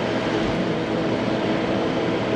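Open-air safari tour tram running at a steady speed: an even rumbling drone with a faint steady hum in it.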